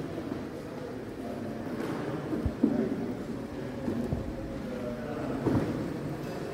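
Motorized LEGO train with a blue-and-white electric locomotive rolling along plastic LEGO track over a steady background noise, with a few short knocks in the second half.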